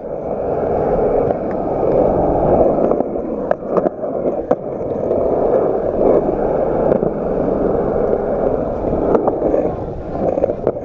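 Skateboard wheels rolling on rough concrete: a steady, loud rolling rumble, broken by a few sharp clicks.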